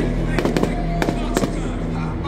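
Aerial fireworks bursting overhead: several sharp bangs in quick succession, with music playing underneath.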